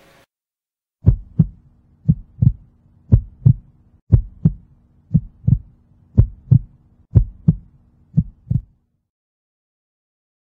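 Heartbeat sound effect: eight double thumps (lub-dub), about one pair a second, over a faint steady hum, starting about a second in.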